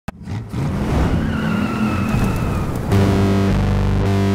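Logo-intro sound effect of car tyres squealing over a running engine, the squeal falling slightly in pitch. About three seconds in it gives way to a loud, held, distorted electric guitar chord.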